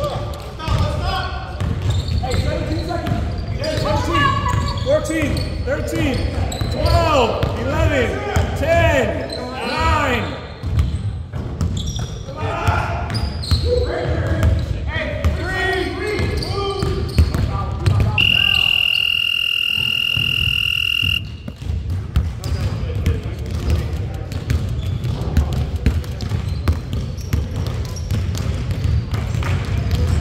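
Basketball game on a hardwood gym floor, echoing in a large hall: a ball bouncing, sneakers squeaking on the floor in short rising-and-falling squeals, and players calling out. About eighteen seconds in, the scoreboard buzzer sounds one steady high tone for about three seconds.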